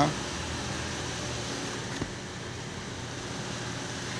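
Car's electric fans running as a steady whir inside the cabin, switched on to load the hybrid's charging system while its voltage is checked. A faint click about two seconds in.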